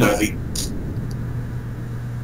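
A man's voice trails off at the end of a word. After a short breath-like hiss, he holds a single low steady hum through a pause between words, over a faint low room rumble.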